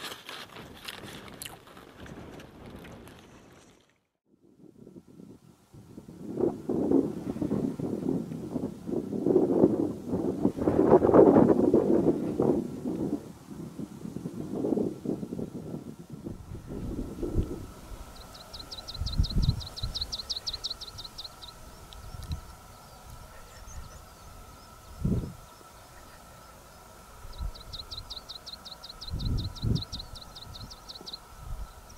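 Wind buffeting the microphone on an open hillside, a loud rumbling gust for about ten seconds. After it dies down, two bursts of a rapid high trill of a few seconds each can be heard over faint background hum, with a few soft low thumps.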